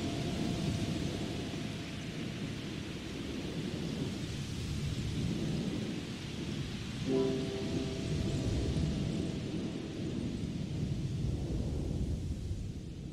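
Steady rain with a low rolling thunder rumble, laid under an ambient music track. A soft held chord fades out early, and a new one enters about seven seconds in and dies away over a few seconds.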